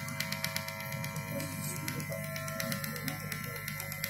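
Harmonium held quietly on a steady chord, over a low electrical hum from the sound system.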